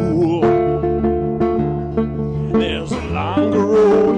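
Acoustic guitar chords ringing under a man's singing voice. His held notes waver in pitch at the start and again through the second half.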